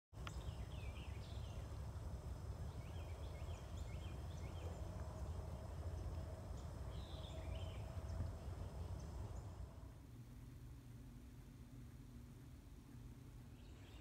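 Faint rural ambience: scattered short bird chirps over a low steady rumble. The rumble drops quieter about ten seconds in.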